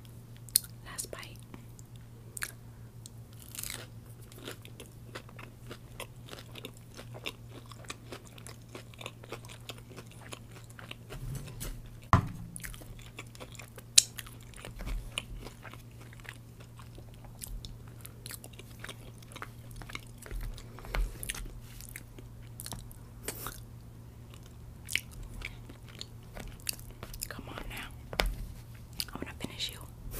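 Close-miked chewing and biting of sauce-glazed fried General Tso's chicken and rice, with wet mouth sounds and light crunches. Sharp clicks come irregularly throughout, the loudest about twelve and fourteen seconds in, over a low steady hum.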